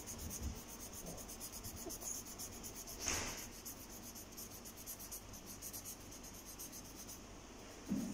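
A marker rubbing on paper in faint colouring strokes, with one louder swish about three seconds in.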